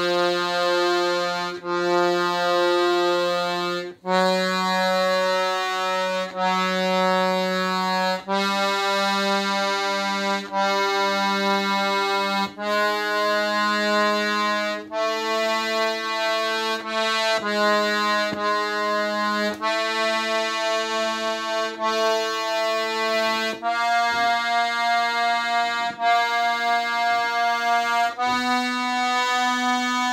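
Excelsior accordion sounding held notes one after another, each lasting about two seconds with brief breaks between them, the pitch moving up and down in steps: the reeds being played through for a tuning check.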